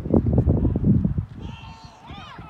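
Football linemen colliding at the snap: a burst of low thuds and rumble for about a second, fading, then a short high shout.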